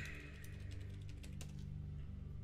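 A few clicks of computer keyboard typing over quiet background music with a steady low bass.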